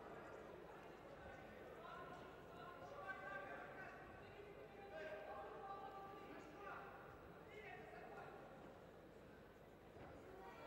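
Faint voices calling out, heard across a large hall, with a soft thump about three seconds in.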